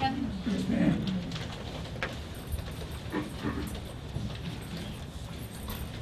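Meeting-room lull: faint murmured voices and a few small knocks and rustles over a low steady room hum.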